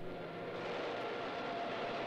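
Steady drone of a distant engine, an even rumble with a faint hum and no change in level.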